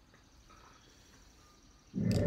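Quiet room tone with a faint steady high-pitched whine, then a sudden loud low thump right at the end.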